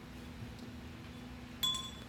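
A single brief metallic clink about one and a half seconds in, ringing for a moment before it dies away, over a steady low room hum.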